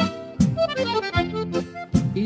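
Accordion playing an instrumental phrase of a gaúcho regional song in held chords, over a regular beat of about one hit every three quarters of a second.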